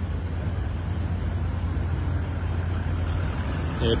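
Toyota Land Cruiser 79's V8 turbo engine idling, a steady low rumble.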